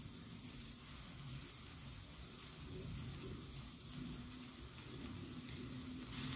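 Bamboo-stick sparklers burning with a faint, steady sizzle, while a jet-flame torch lighter lights the next stick.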